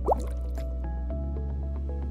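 Instrumental background music with a steady bass line. Near the start a single short, loud rising blip sweeps up in pitch over it.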